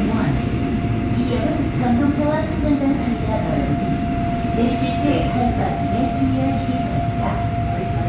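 Seoul Subway Line 5 train running through a tunnel, heard from inside the car: a loud, steady low rumble. A steady high whine comes in about a second in and holds.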